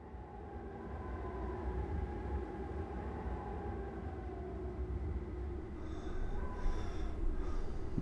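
A steady low rumble with several droning tones held over it, fading in from silence at the start, like an ambient outdoor drone. Faint high chirps come and go near the end, and a sudden loud hit lands right at the close.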